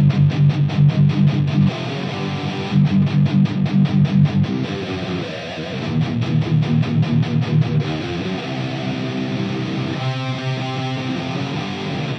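Two electric guitars in drop C tuning playing a metal verse riff together: stretches of fast, evenly picked chugging on the low notes alternate with held chords. The riff cuts off suddenly at the end.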